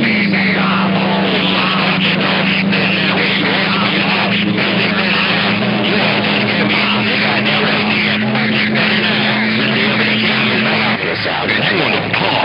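A CB radio key-down heard through the receiver: a transmitting station's signal comes in as one steady low hum over radio hiss, held for about eleven seconds before it drops. The signal is strong enough to push the receiving station's meter all the way to the right.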